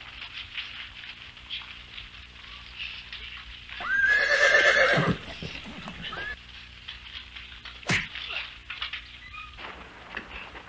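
A horse whinnies loudly for about a second, starting about four seconds in. Low scuffling runs underneath, and a single sharp thud of a blow lands near the end.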